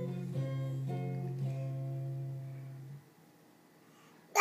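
Guitar music: a few held, ringing guitar chords that change twice, then cut off abruptly about three seconds in.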